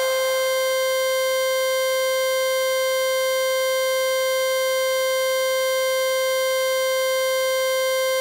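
A single electronic tone held at one unchanging pitch, with no beat under it: the sustained closing note of a hardstyle track.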